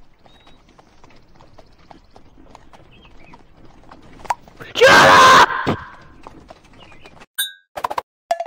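A single very loud horse-like whinny about five seconds in, lasting under a second, against a faint background with small clicks.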